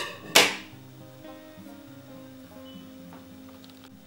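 A pair of scissors snips through acrylic yarn once, a short sharp sound about half a second in, over soft background music.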